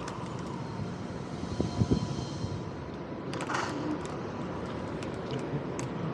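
Vsett 10+ dual-hub-motor electric scooter rolling slowly over concrete sidewalk: steady tyre and road rumble with a faint steady whine, a couple of knocks about two seconds in and a short hiss past the halfway point.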